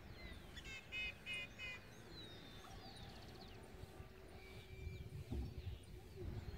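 Wild birds calling: a quick run of four short, loud, repeated calls about a second in, over faint scattered chirps, with a low rumble near the end.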